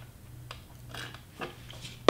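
A person sipping a drink: a few faint, short sounds of sipping and swallowing over a low steady hum.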